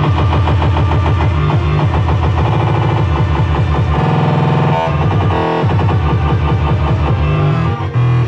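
Loud live band music: a fast, driving low riff pulsing under dense chords, giving way to a held chord for about a second midway before the pulse returns.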